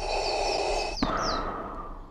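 Darth Vader's mechanical respirator breathing: one hissing breath in that cuts off abruptly about a second in, then a fainter breath out that fades away.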